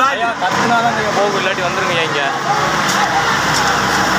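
Several people shouting and calling over one another, with a vehicle engine running underneath.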